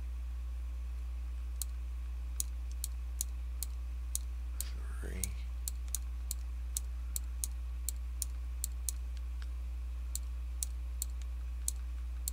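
Computer mouse button clicking repeatedly, about two to three clicks a second starting a moment in, over a steady low electrical hum. A brief vocal sound comes about five seconds in.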